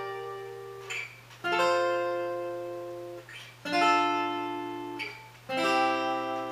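Steel-string acoustic guitar playing three-note chords (G minor, F, D minor, C) on the top three strings high up the neck: three chords struck about two seconds apart, each left to ring and fade, with a short squeak of fingers shifting on the strings before each one.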